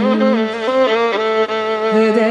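Carnatic violin playing a free-rhythm ālāpana phrase in rāga Keeravani, holding notes and stepping up and down between them, over a steady tanpura drone.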